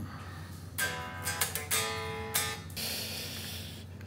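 Les Paul electric guitar strummed: four chords starting about a second in, each ringing briefly, followed by a short scratchy hiss of string noise near the end.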